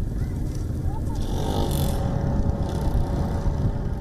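Steady low rumble of outdoor field-recording ambience, with a brief faint hiss in the middle.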